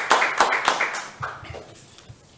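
Hand clapping, a steady run of claps about three or four a second that fades out after about a second and a half.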